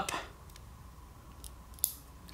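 A crimped terminal pin being pushed into a plastic Denso fuel-injector connector: a few faint ticks, then one sharp click near the end as the pin's locking tooth latches in, the sign that the pin is seated.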